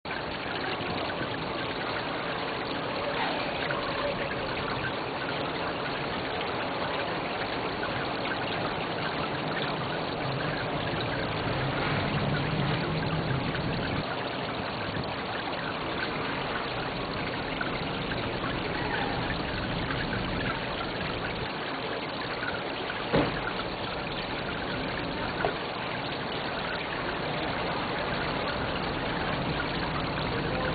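Fountain water falling over a stack of horizontal ledges, a steady splashing trickle. A sharp click stands out once late on, with a fainter one a couple of seconds after.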